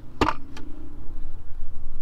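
A single sharp plastic clack from the center console armrest lid as it is shut, with a smaller click about half a second in. A low steady rumble runs underneath.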